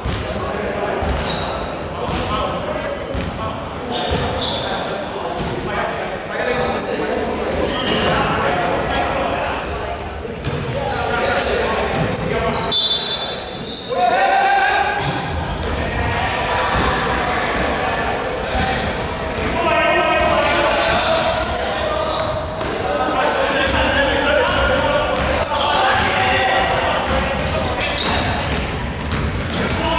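Basketball game on an indoor wooden court: the ball bouncing on the floor, short high sneaker squeaks, and players and spectators calling out, all echoing in a large hall.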